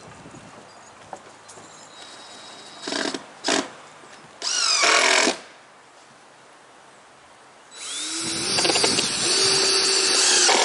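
A cordless drill driving screws into wood, first in two short bursts, then a run of about a second that speeds up, then a longer run from about 8 seconds in that winds up in pitch and then holds.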